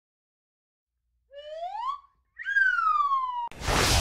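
A two-part wolf whistle: a short rising whistle, then a higher one that falls slowly away. Near the end a loud whoosh sweeps in as an intro transition sound effect.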